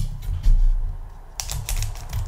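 Foil Pokémon booster pack handled and flexed in the hands, giving several short crinkles and crackles, most of them in the second half. Low background music runs underneath.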